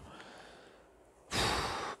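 A man's heavy breathy sigh, about two-thirds of a second long near the end, a sign of weariness.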